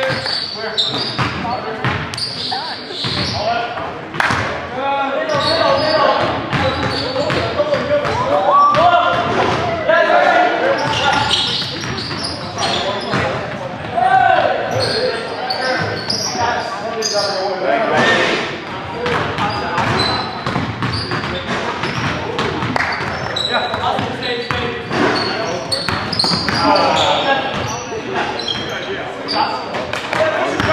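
Basketball game play on a hardwood gym floor: the ball bouncing repeatedly, mixed with indistinct shouts from the players, all echoing in the large gym.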